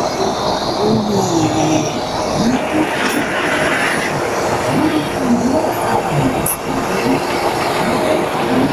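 Steady, loud street traffic noise, with indistinct voices underneath now and then.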